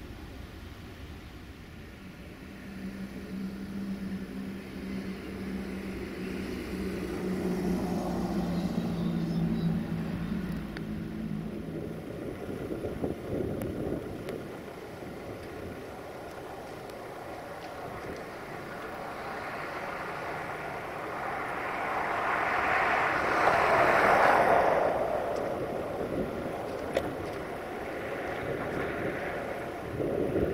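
The Sulzer diesel engine of a 060-DA (LDE 2100) locomotive running as it slowly approaches hauling an intermodal freight train: a steady low drone that grows louder over the first ten seconds. A louder rush of noise swells and fades about two-thirds of the way through.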